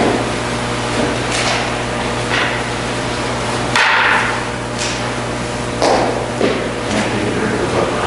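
Handling noises: a series of short knocks and rustles, the longest about four seconds in, over a steady low electrical hum.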